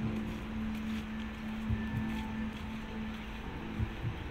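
Sound installation playing a slow heartbeat: pairs of deep thumps about two seconds apart over a sustained low musical tone.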